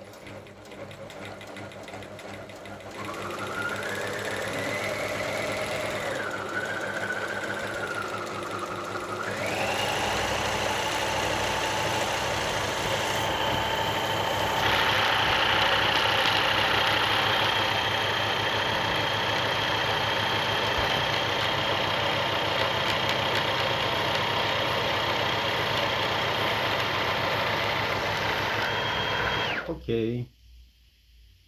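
Pfaff Variomatic 6085 sewing machine running on its bobbin winder, filling a bobbin with thread. For the first several seconds the motor speed rises and falls. It then runs steadily at high speed with a high whine and stops suddenly at the very end.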